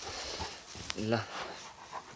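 Soft rustling and scuffling in grass as a large long-haired dog goes for a rope ball toy on the ground. A sharp click comes just before a second in, followed by a short low voice sound.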